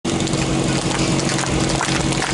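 Portable fire pump's engine running steadily, a constant low hum with a higher steady tone above it.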